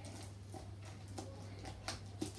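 Faint rustling and a few light taps as hands press leaves and sticky tape down onto a board, over a low steady hum.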